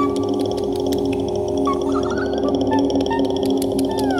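Extended-technique vocal music: several steady low tones are held beneath short, high chirping slides and a fast, even high-pitched ticking.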